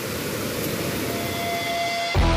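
Steady rushing noise of a cascading waterfall, water pouring fast over rocks.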